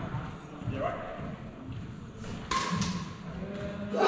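Badminton rally: sharp racket strikes on a shuttlecock, two close together a little past halfway, with footfalls and shoe noise on a wooden court, echoing in a large hall.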